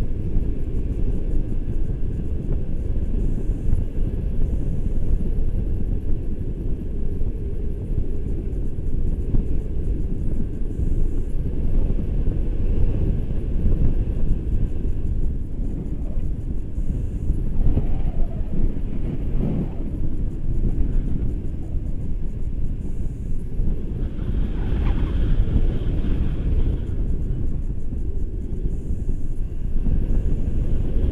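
Airflow buffeting the microphone of a handheld camera on a tandem paraglider in flight: a loud, steady low rumble of wind noise.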